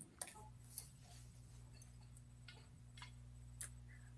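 Near silence on a video-call audio feed: a faint steady low hum with a few scattered faint clicks, while one caller's audio has faded out.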